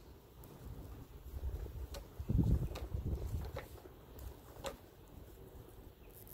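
Lower leaves being snapped off a kalanchoe cutting's fleshy stem by hand: a few faint, sharp clicks over a low rumble of handling, which swells about halfway through.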